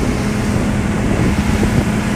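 Large outboard motor driving a speedboat at speed, a steady drone, with wind buffeting the microphone over the rush of the wake.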